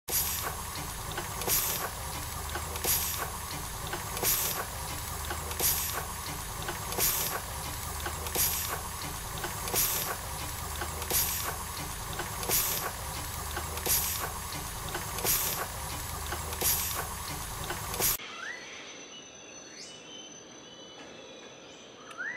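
Steam engine sound effect: a steady hiss of steam with a rhythmic puff about every second and a half, cutting off suddenly about 18 seconds in to a much quieter background.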